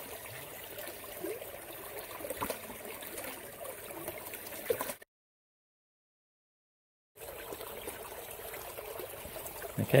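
Water rushing steadily out of the open end of a black plastic pipe into a shallow burn, as the pipe is flushed to scour it clear of peat. The sound cuts out completely for about two seconds a little past halfway, then the same steady flow resumes.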